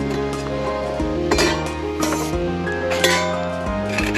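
Metal wood-stove chimney pipe sections clinking against each other a few times as they are handled, over background music with sustained notes.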